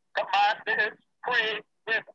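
Speech only: a person talking in short phrases over a Zoom call, the sound cutting to dead silence between words.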